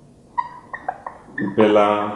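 Felt-tip marker squeaking on a whiteboard in a string of short, high chirps as letters are written. Near the end a drawn-out spoken word comes in.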